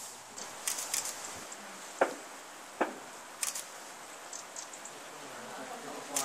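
Quiet outdoor background with a few clusters of short, high ticks and, about two and three seconds in, two louder sharp clicks.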